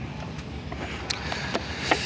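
Low, steady rumble of engines running, with a few light clicks in the second half.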